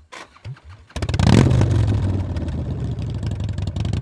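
Harley-Davidson V-twin motorcycle being started: a brief crank, then the engine catches about a second in with a quick rev and settles into a steady, rapidly pulsing idle.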